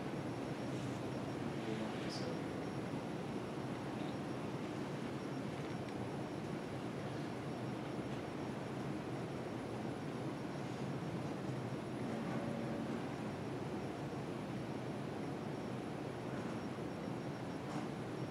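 Steady room background noise, an even continuous hiss, with a faint spoken word about two seconds in.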